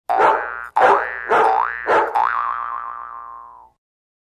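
Cartoon 'boing' sound effect: a springy twanging tone struck about five times in quick succession, its pitch dipping and springing back up on each strike. The last one wobbles and fades out shortly before the end.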